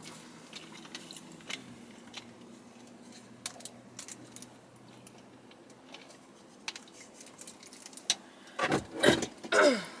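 A quiet car cabin with a faint steady hum and scattered light clicks and taps. Near the end a person clears her throat twice.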